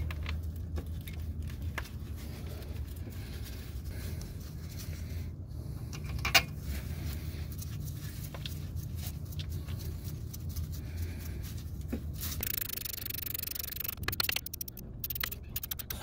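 Light metal scrapes and clicks of greased slide pins being pushed into a brake caliper as it is mounted, over a steady low hum. There is one sharper click about six seconds in and a quick run of clicks near the end.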